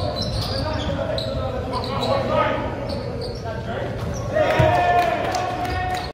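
A basketball being dribbled on a hardwood gym floor during a game, with players and spectators calling out, in a large echoing gym.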